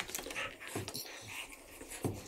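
Quiet eating sounds: noodles being slurped and chewed, with a few light clicks of forks against plates.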